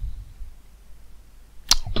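Faint low room hum, then a single sharp click near the end.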